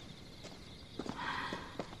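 Footsteps on stone paving: a handful of sharp steps in an uneven rhythm, with a soft rustle of clothing around the middle.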